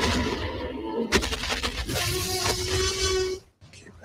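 Music mixed with a loud, noisy crashing sound effect, which cuts off suddenly about three and a half seconds in.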